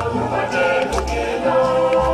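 Choir singing a hymn in long held notes.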